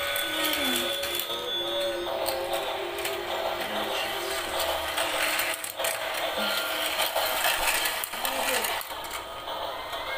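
Battery-powered toy car track running, its screw lift carrying small plastic cars up with a continuous mechanical whirr and rattle, with music playing alongside.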